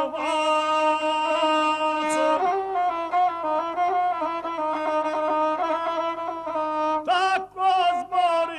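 Gusle, the single-string bowed Balkan folk fiddle, bowed in a continuous ornamented melodic line, with a brief break about seven and a half seconds in.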